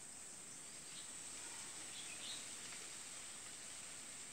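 Faint, steady background noise with a constant high-pitched hiss and a few faint brief sounds in the middle; no speech.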